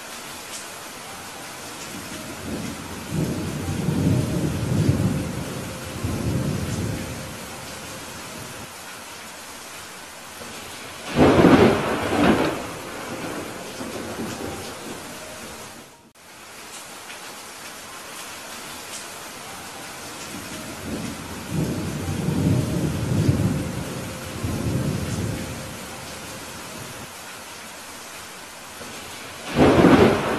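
Steady rain with thunder. A low rolling rumble builds a few seconds in, a loud sharp thunderclap cracks about eleven seconds in, a second rolling rumble comes past the twenty-second mark, and another sharp clap lands at the very end.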